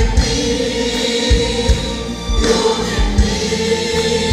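A mixed group of men and women singing a Malayalam worship song in unison, accompanied by a band with low drum beats.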